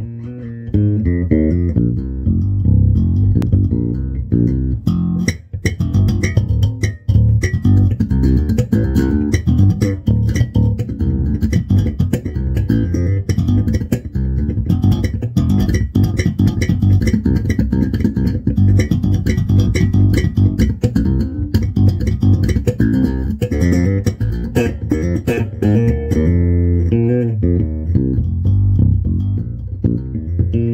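Ken Smith five-string electric bass played fingerstyle in passive mode with the EQ flat, a steady stream of fast plucked notes.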